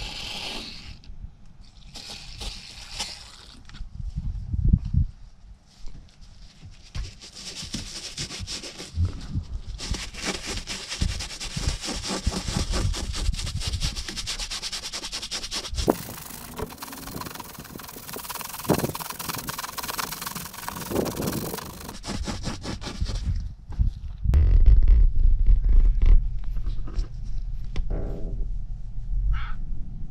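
Short hisses of an aerosol cleaner sprayed onto a car's fabric headliner, then a long stretch of toothbrush scrubbing on the headliner in fast, scratchy strokes. Near the end a loud low rumble takes over.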